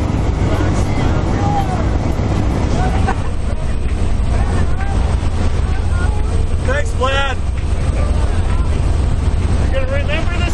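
Loud, steady drone of a jump plane's engine and propeller heard from inside the cabin in flight. Faint voices come through over it, with one brief raised call about seven seconds in.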